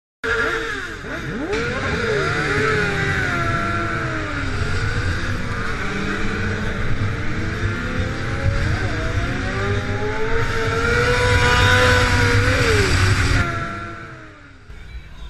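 Sportbike engine revving hard with squealing tyres: a deep rumble under many overlapping rising and falling engine notes. It starts abruptly just after the beginning and fades out near the end.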